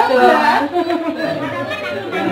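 Overlapping chatter of many people talking at once, with no single voice standing out.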